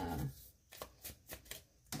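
A few faint, sharp clicks about half a second apart in a quiet pause, following the tail end of a hesitant 'uh'.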